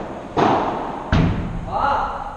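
Padel rally: a padel ball struck hard twice, about half a second and about a second in, the sharp hits ringing on in a large indoor hall.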